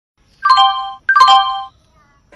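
Railway station public-address chime: two electronic chord tones, each ringing about half a second before dying away, the attention signal that precedes a train-arrival announcement.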